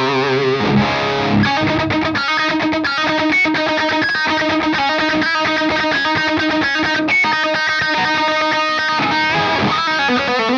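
Electric guitar played through the Maestro Ranger Overdrive pedal. It opens on a held note with wide vibrato, then from about a second and a half in plays a fast riff of rapidly picked repeated notes, and ends on another note with vibrato.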